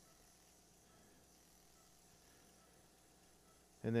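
Near silence: faint room tone, with a man's voice starting right at the end.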